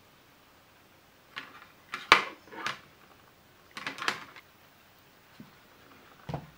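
Handling noise: a few light knocks and clicks of hard plastic objects being picked up and set down on a bench. They come in three short clusters, the loudest about two seconds in, as a small plastic mini PC is handled and placed onto a glass-topped kitchen scale.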